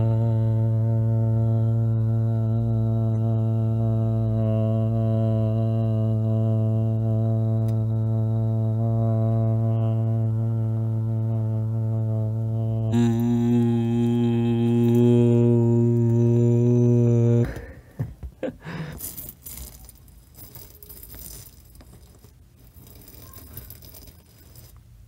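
A man humming one long low note, held steady for about thirteen seconds and then moved to a slightly higher note for a few more, picked up by a microphone inside a large helium balloon; the hum is not raised in pitch. It stops abruptly about seventeen seconds in, leaving faint rustles and scrapes of the balloon being handled.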